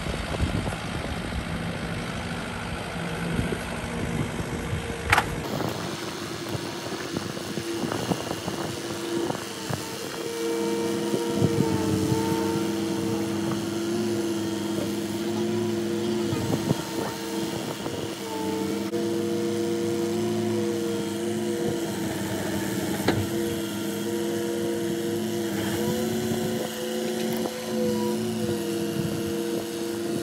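Cat 308 mini excavator's diesel engine and hydraulics running steadily while the machine lifts and stands a wooden piling upright. The hum dips slightly in pitch several times under load, with a few short knocks, and the sound changes abruptly about five seconds in.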